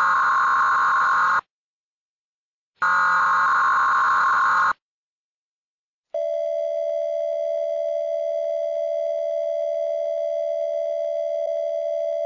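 Two harsh alarm-buzzer blasts, each about two seconds long with a short gap between, then a long steady electronic tone that starts about six seconds in and holds.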